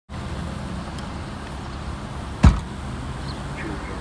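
Steady low rumble of road traffic at an intersection, with one sharp thump about two and a half seconds in.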